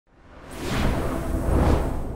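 Whoosh sound effect: a rushing noise with a deep rumble underneath that swells up over about a second and a half, then starts to die away near the end.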